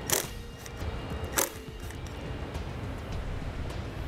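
Two sharp metallic clicks about a second apart from a socket wrench working the nuts that hold the charcoal canister, over steady background music.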